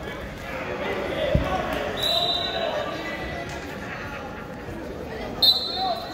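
Shouting from coaches and spectators echoing in a gymnasium during a wrestling bout, with a single thud of bodies hitting the mat about a second and a half in. Short shrill high-pitched sounds come about two seconds in and again near the end.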